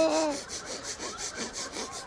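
Toddler's laughter: a short voiced laugh, then quick breathy, rasping huffs of laughter at about eight a second.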